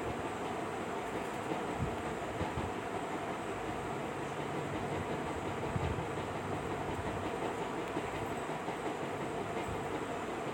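A steady rumbling background noise with faint, irregular low knocks in it.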